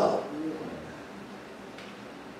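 A pause in a man's speech over a microphone: his last word trails off, a brief faint hum comes about half a second in, then only quiet room noise.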